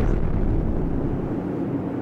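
A low rumble from the anime's soundtrack that slowly dies away.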